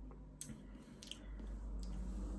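Faint wet mouth sounds of lips and tongue smacking while tasting a sour beer: three small clicks spread over two seconds.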